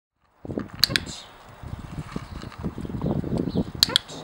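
Two sharp double clicks, one about a second in and one near the end, typical of a dog-training clicker marking the puppy's paw touch, over a low rumbling noise on the microphone.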